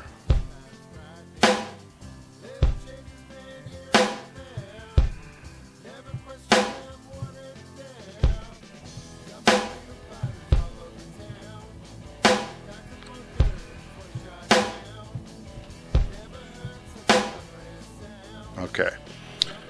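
BOSS Dr. Rhythm DR-3 drum machine sounding single kick drum and snare hits as its pads are pressed one at a time to program a pattern in step-record mode. The kick thumps and snare cracks mostly alternate, about fifteen hits, unevenly spaced a second or so apart.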